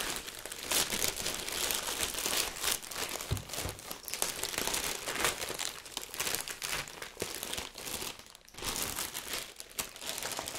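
Clear plastic bag crinkling and rustling continuously as it is handled and worked around a framed plaque, a dense run of small crackles with a brief lull about eight and a half seconds in.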